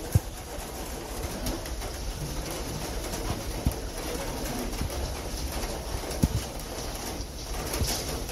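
Steady running noise of a cog railway in rain, with a few sharp, low knocks spread through.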